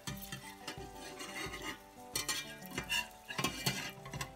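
Egg frying in butter in a cast iron skillet, a soft sizzle, with a metal spatula scraping and tapping against the pan a few times in the second half.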